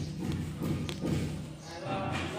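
A small glass vial set down on a polished granite surface, giving a light tap about a second in, with voices in the background.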